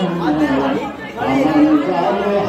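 A group of people's voices, several drawn out on long held notes, over a steady low hum.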